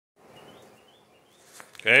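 Quiet outdoor background with faint bird chirps and a couple of small clicks, then a man's voice starts loudly near the end.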